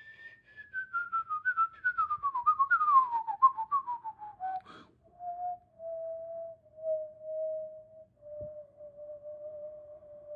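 A person whistling a melody: a quick run of wavering notes stepping downward for about five seconds, then several long held low notes.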